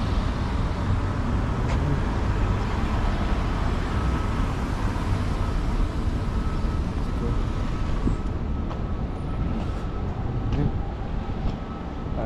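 City street traffic at an intersection: cars driving past close by, a steady low rumble of engines and tyres.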